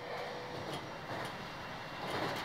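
Steady running noise inside a moving local train car, an even rumble and hiss, with a faint steady tone in the first half.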